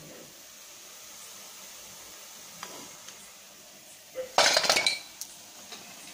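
A metal slotted ladle clinks several times against a stainless steel bowl, in a burst about four seconds in, as fried cashew pakodas are tipped off it. Before that there is only a faint steady hiss.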